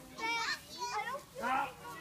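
Children's voices: several kids chattering and calling out in short high-pitched bursts while playing a game.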